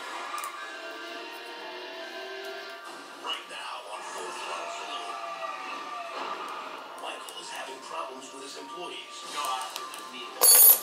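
A television playing in the background: quiet talk with music under it.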